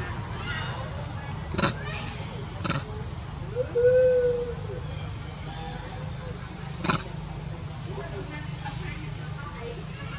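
Outdoor forest ambience: a steady low rumble under a steady high pulsing buzz. Three sharp clicks come in the first seven seconds, and a short rising-and-falling tonal call, the loudest sound, comes about four seconds in.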